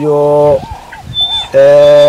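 A man's voice drawing out two long, even vowel sounds, one at the start and one near the end, with a short pause between.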